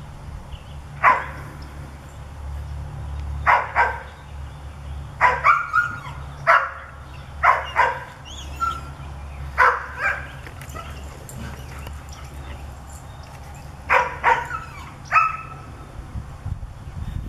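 Standard poodles barking at squirrels in the trees: about fifteen sharp barks, some single and some in quick pairs or threes, with a pause of a few seconds before a last few barks near the end.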